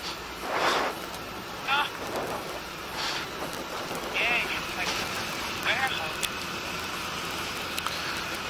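Steady wind and road noise from a Honda ST1300 Pan European motorcycle riding at moderate speed, picked up by the rider's helmet microphone, with a few brief surges of wind.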